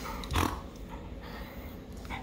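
A dog makes one short sound about half a second in, followed by low background noise.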